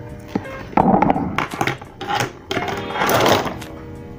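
Pens and pencils knocking and clattering on a wooden desk as they are handled and set down, with several separate knocks and handling noise loudest about a second in and near three seconds. Background music plays throughout.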